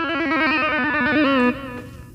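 Pedal steel guitar playing a continuous run of rapid hammer-ons and pull-offs on open strings, the notes alternating quickly in an unbroken trill. The trill stops about one and a half seconds in, and the strings ring on briefly and fade.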